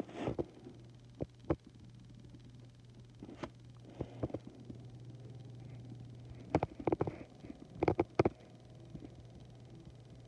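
Irregular plastic clicks and clacks from a K'NEX spider ride model, in small clusters about 4, 7 and 8 seconds in, over a low steady hum.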